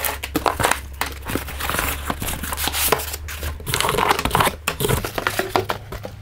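Cardboard box and foam packing being handled as a boxed oscilloscope is pulled out by hand: irregular scraping, rustling and small knocks.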